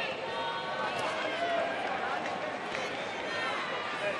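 Boxing arena crowd: many voices shouting and calling at once, with one sharp knock about a second in.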